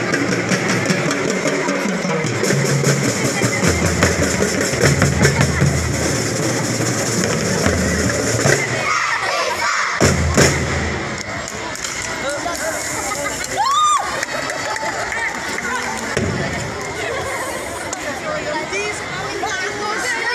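Elementary-school drum and lyre corps drumming, with snare strokes over a steady bass-drum beat, ending on final hits about halfway through. The crowd then cheers and shouts.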